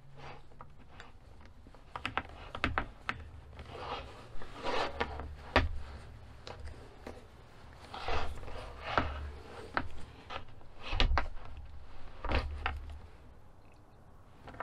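Handling noise of a plastic hose fitting being worked onto the end of a clear braided vinyl hose: irregular rubs and small clicks of plastic and hose in the hands, with a few dull knocks.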